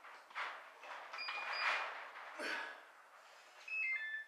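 A man breathing hard while pressing dumbbells, with short forceful breaths roughly once a second.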